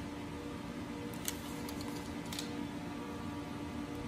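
Soft steady background music, with a few faint crinkles and clicks about a second in and again just past two seconds as the banner vinyl and its hem tape are folded and creased by hand.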